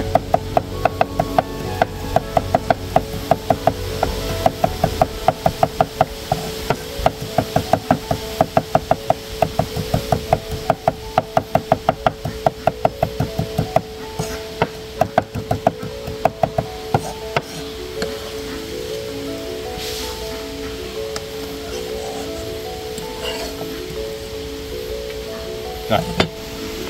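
Cleaver mincing fresh chili on a thick round wooden chopping board: a quick, even run of knocks about four a second that stops about two-thirds of the way through, with background music throughout.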